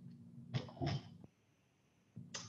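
Two short, faint breathy sounds from a person close to the microphone, about a third of a second apart.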